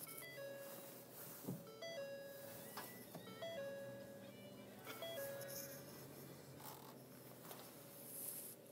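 2013 Ford Fusion's electronic dashboard chime sounding after the push-button start: a short two-note tone, higher then lower, repeating about every second and a half, four times, over a faint steady hum.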